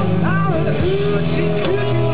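Live blues band playing: electric guitar and drums under a lead line of notes that bend upward in pitch.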